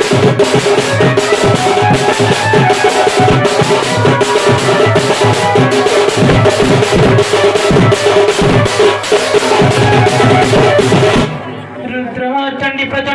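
Dhol, a painted two-headed barrel drum, beaten fast and continuously with a stick over a held melodic line. The drumming stops about a second before the end.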